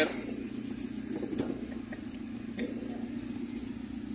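Car engine running as the car creeps forward at low speed, heard from inside the cabin as a steady low hum, with a few faint clicks.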